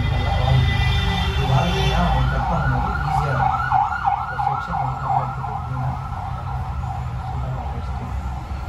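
A siren wailing in quick up-and-down sweeps, about three a second, growing louder to a peak mid-way and then fading, over a steady low hum.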